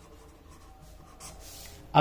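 Pen writing on paper: a faint run of short scratching strokes as a word and a tick mark are written.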